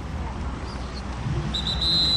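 Jet ski engines running at the shoreline, a low rumble that grows from about halfway through, with one high whistle blast lasting under a second near the end.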